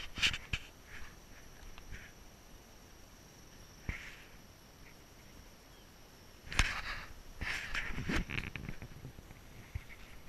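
Irregular footsteps and knocks on weathered wooden deck boards, with grass and brush rustling past. The steps are loudest near the start and in a cluster in the second half.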